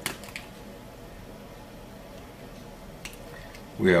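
Small sharp clicks of a mosquito hemostat working elastic power chain onto lingual orthodontic brackets: a quick cluster at the start and one more about three seconds in, over a faint steady hum. A man's voice starts just before the end.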